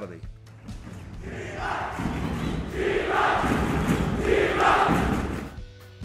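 Crowd of fans chanting and cheering in a swell that builds from about a second in, pulses several times and cuts off near the end, over a steady music bed.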